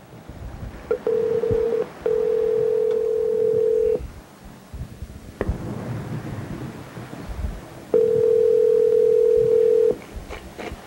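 Telephone ringback tone over the phone line as an outgoing call rings unanswered. A steady tone comes on for about two seconds and goes off for about four, ringing twice, with a short burst just before the first ring. A click comes about halfway through.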